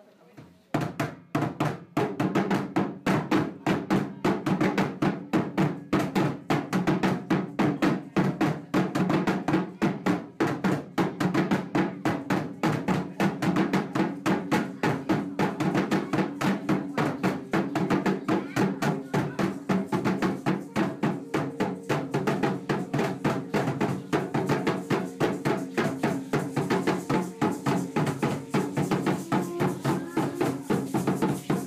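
Two tall upright huehuetl drums beaten together in a fast, steady rhythm for Aztec dance, starting about a second in.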